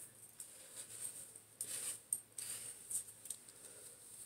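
Hairbrush drawn through long hair: a few soft, brushing strokes, the clearest in the middle.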